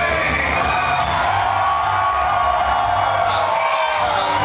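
A live rock and hip-hop band playing, with the crowd cheering and whooping over the music.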